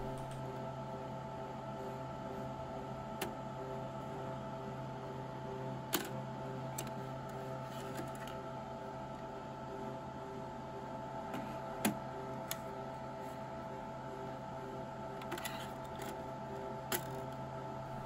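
Several light, sharp clicks from the slim optical drive being unlatched, pulled from its bay on the HP ProLiant DL580 G4 server and a DVD-ROM drive slid in, over a faint steady hum.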